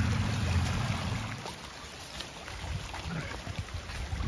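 Fast shallow floodwater running across a path, with a low rumble from wind on the microphone for about the first second.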